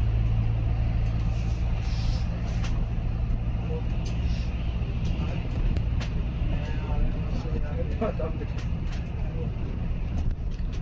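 Inside a moving bus: the engine's steady low drone fills the cabin, with scattered short rattles and knocks from the body and fittings.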